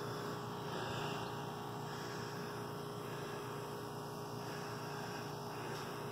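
A steady, even hum with faint background noise. No distinct events stand out.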